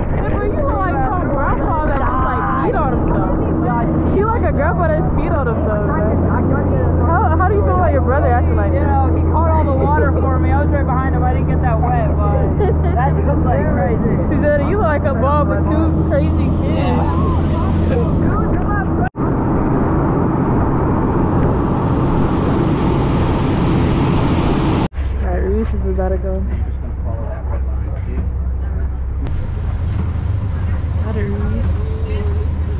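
Coast Guard boat under way: a steady low engine drone with wind and rushing wake, and voices talking over it. The sound drops out abruptly for an instant twice, once a little past the middle and again a few seconds later, with a louder rush of wind and water between the two.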